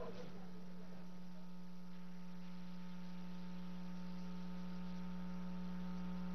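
Steady electrical mains hum on the broadcast audio line: a low, constant hum with a ladder of fainter, higher steady tones above it and nothing else.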